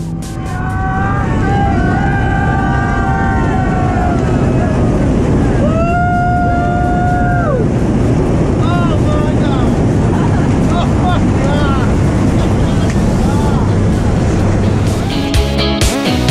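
Steady engine and wind noise inside a small jump plane climbing with its door open, with voices whooping and calling out over it; one long held whoop about six seconds in. Music comes in near the end.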